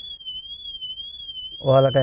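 Honda Civic's security alarm sounding: a high electronic siren tone warbling up and down about twice a second. It has been set off by the cabin's motion (intrusion) sensor.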